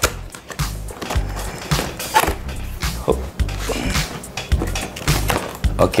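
A cardboard box being opened by hand, with repeated scrapes, rustles and light knocks of the flaps and lid, over background music.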